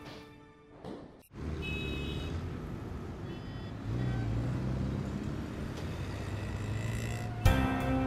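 Background music ends, then a steady noisy outdoor ambience with a low hum and a few faint high chirps fills the transition. About seven and a half seconds in, a sharp hit and plucked guitar music begin.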